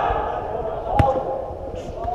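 A football kicked once, a single sharp thud about halfway through, over players' shouts on the pitch.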